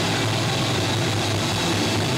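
Live punk band's amplified instruments in a loud, steady drone: a held low bass note under a wash of distorted electric guitar and cymbals, with no singing.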